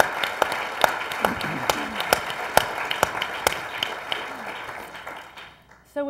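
An audience and panel applauding: many hands clapping at once, with a few loud, sharp claps close to the microphones, dying away about five seconds in.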